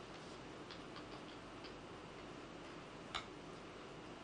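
Faint, irregularly spaced small clicks over a quiet room hum, then one sharper, louder click a little after three seconds in.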